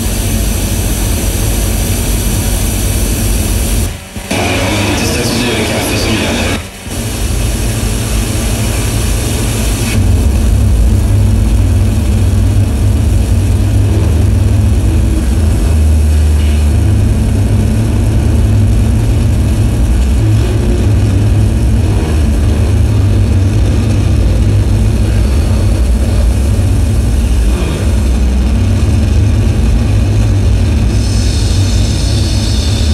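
Loud, dense electronic noise music played live: a harsh wall of hiss and rumble that cuts out briefly twice in the first seven seconds, then from about ten seconds is dominated by a heavy low rumble.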